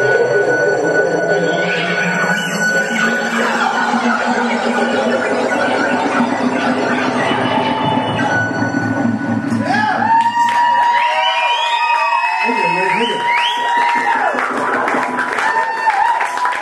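Live rock band's amplified instruments holding sustained notes. About ten seconds in they give way to sliding high-pitched tones and a steady high whine, with crowd voices underneath.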